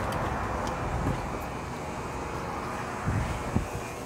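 Steady, noisy background ambience of a handheld on-location recording, with a few brief low thuds about three seconds in.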